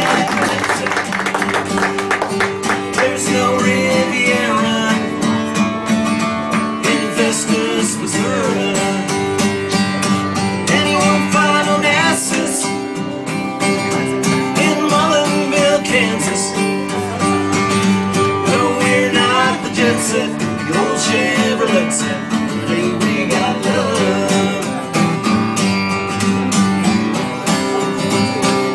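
Live country music: a strummed acoustic guitar with backing band, and a sung vocal line at times.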